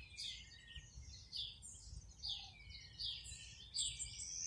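Small birds chirping, faint: a quick run of short, high chirps that each sweep downward in pitch, several a second.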